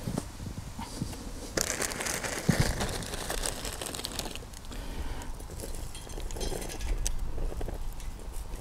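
Dry birch wood chips rustling and crinkling as they are handled and dropped into small stainless-steel twig stoves, with scattered light ticks and taps.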